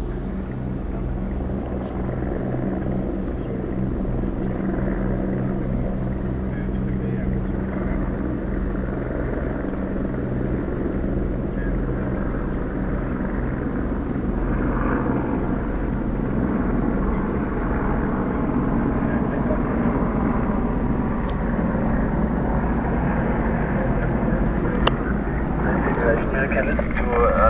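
Car engine running with a steady low hum and road and cabin noise, heard from inside the car.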